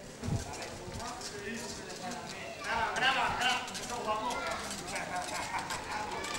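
People talking while walking along a paved street, their voices rising about two and a half seconds in, over a run of sharp clicking footsteps.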